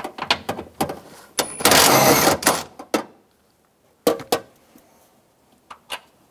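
Ratchet wrench with a 14 mm socket clicking as it loosens a nut. A dense run of fast ratcheting comes about a second and a half in, followed by a few separate metal clicks.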